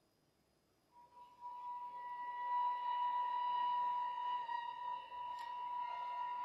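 A pause in the music, then, about a second in, a single instrument enters softly and holds one high, pure note that swells a little and sustains to the end, with a faint click near the end.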